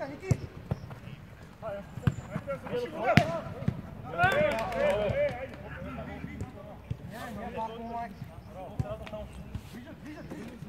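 Football kicked on an artificial-turf pitch during a five-a-side game: several sharp thuds of the ball, the loudest about three seconds in, amid players' shouts, with a loud burst of shouting just after four seconds.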